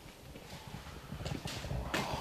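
Footsteps coming closer across the floor, getting louder through the second half, with a few light knocks near the end as a metal mug of water is carried in.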